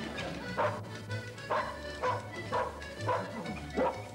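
A dog barking about six times in short, sharp barks, over background music.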